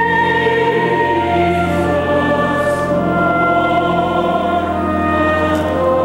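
Choir singing slow, held chords over a steady low sustained bass note, in a reverberant church.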